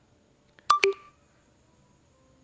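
Two quick, sharp electronic clicks with a short beep in them, under a fifth of a second apart and about two-thirds of a second in: a smartphone's touch sound as an on-screen button is tapped.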